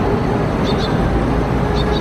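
Loud outdoor street ambience: a steady low rumble of traffic with people talking in the background.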